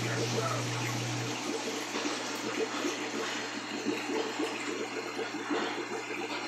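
Aquarium air stone bubbling steadily, a dense stream of bubbles rising and breaking at the water surface. A low steady hum stops about a second in.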